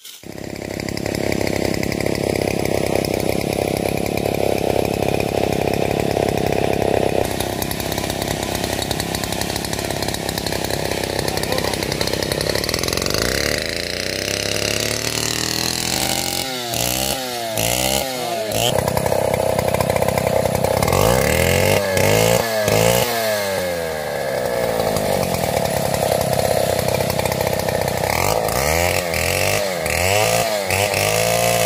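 Stihl MS 382 two-stroke chainsaw running at high revs and sawing into a tree trunk. In the second half its engine pitch swings down and back up several times.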